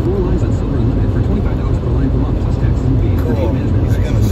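Steady low rumble of road and engine noise inside a moving vehicle, with a faint voice in the background.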